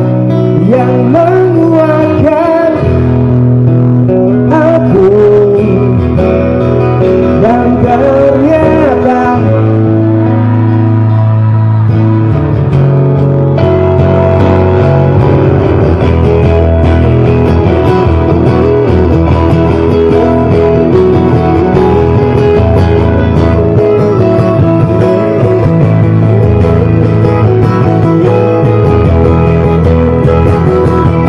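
Loud live band music over a PA system: a singer's voice over guitar, bass and drums in roughly the first ten seconds, then an instrumental passage led by guitar.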